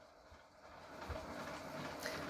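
Faint steady background noise, a low hiss with a faint hum, fading in about half a second in after a moment of near silence.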